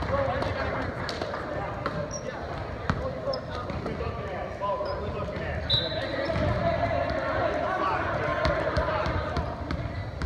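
Volleyball gym between rallies: unclear voices of players and spectators talking and calling, with a ball bouncing on the hardwood court in short, sharp knocks and a few brief high squeaks, likely sneakers on the floor.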